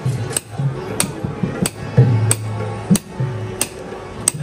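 Dholak playing a steady qawwali beat: sharp strokes about every two-thirds of a second, with deeper bass strokes between them.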